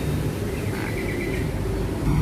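Steady low outdoor background rumble, with a short, faint run of quick high bird chirps about a second in.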